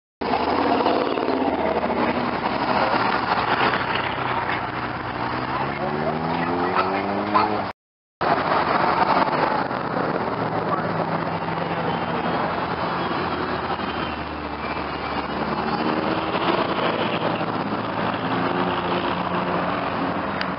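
Car engines running as vehicles drive slowly past in a line of traffic. An engine rises in pitch as it accelerates, once before and once after a brief dropout about eight seconds in. Voices chatter in the background.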